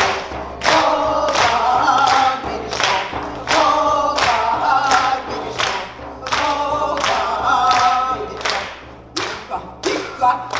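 Several voices singing a song together, over a steady beat of about a stroke and a half per second struck on a large hand-held frame drum.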